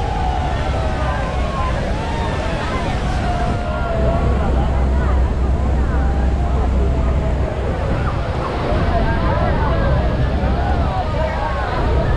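Loud, steady rumbling roar of Niagara's Horseshoe Falls and wind buffeting the microphone in the spray, with a crowd of passengers chattering and calling out over it.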